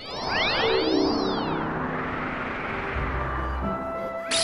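A synthesized music sting for a cartoon transition. Shimmering tones sweep up and down over the first second or so, then held notes step downward, and a low rumble comes in near the end.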